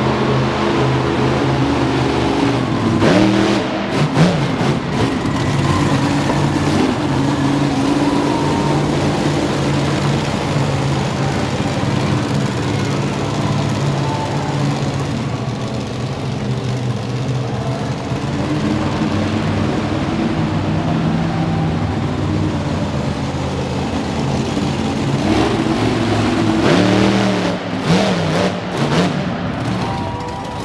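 Monster truck engine running hard, its revs rising and falling as the truck drives and turns in the dirt, with the hardest throttle about three seconds in and again near the end.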